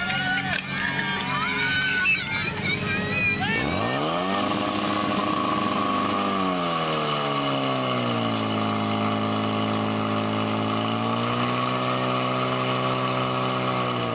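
Shouting voices, then a portable fire pump's engine revs up sharply about four seconds in and holds high before dropping to a lower steady speed, rising slightly near the end, as it pumps water through the hoses to the nozzles.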